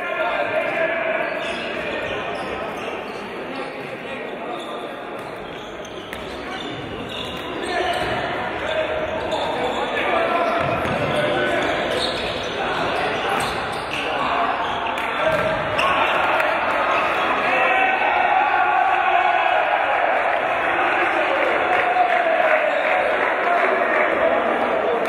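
A handball bouncing on a wooden sports-hall floor during play, amid indistinct shouting voices in a large, echoing hall.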